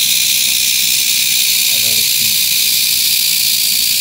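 Red diamond rattlesnake rattling its tail: a steady, high, hissing buzz that does not let up.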